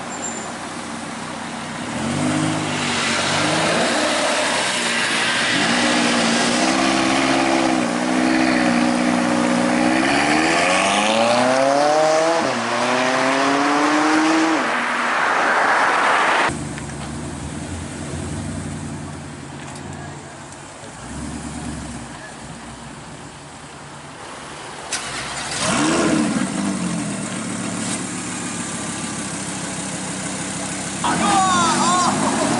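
Aston Martin DB11 engine accelerating past, its note climbing steadily in pitch for several seconds before cutting off suddenly. After that, quieter engines of other cars driving by, with a brief rev near the end.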